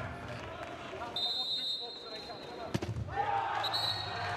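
Handball court sound: a referee's whistle blows a steady high note about a second in. A sharp ball bounce comes near three seconds, and a second short whistle near the end, over arena voices.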